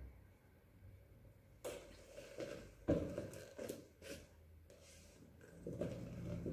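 Faint handling noises as painting supplies are moved about: soft rustles, and a few short clicks and knocks between about two and four seconds in.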